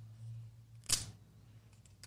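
Plastic seal tab on a cardboard product box being picked at and pulled, giving one short sharp crackle about halfway through, amid faint handling.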